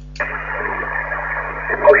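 HF radio transceiver back on receive on upper sideband: after a brief gap, a steady band-limited static hiss comes up through its speaker with a low steady hum underneath. A distant station's voice starts coming in right at the end.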